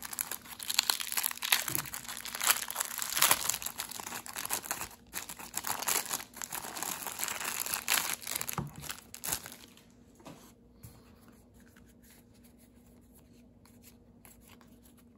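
Thin clear plastic bag crinkling and tearing as hands pull it open to get the cards out, in a run of irregular crackles that stops about ten seconds in, leaving only a few faint card clicks.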